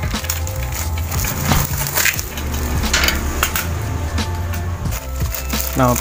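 Cardboard and plastic wrap being cut and torn open with a box cutter, a series of short scraping rips, over a steady low hum.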